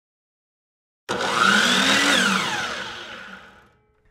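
Power saw whirring as a title sound effect: it starts abruptly about a second in, its motor pitch rising and then falling as it winds down, and it fades out before the end.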